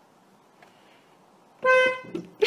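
A car horn honks once, a short steady blast near the end, heard from inside the car after a faint hiss.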